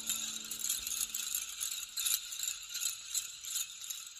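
Small bells or chimes jingling and shimmering in an ambient music track, with many small irregular strikes. A held low note fades out under them in the first half-second.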